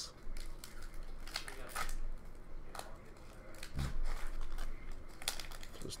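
Foil trading-card pack wrappers crinkling and tearing as packs are opened and cards handled, in scattered irregular rustles and clicks.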